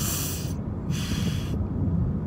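A man sniffing hard through his nose twice, each about half a second long, as he holds back tears. Under it runs the steady low rumble of a car cabin.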